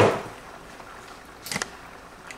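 A single sharp click or knock of a hard kitchen object about one and a half seconds in, over a faint steady hiss from the electric skillet of water heating on the counter.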